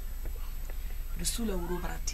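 Speech: a woman says a short phrase about a second in, opening with a hiss and her pitch falling. A steady low hum runs underneath.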